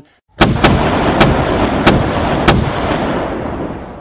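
A loud burst of gunfire: about five sharp shots at uneven spacing over a dense rumble that fades away slowly.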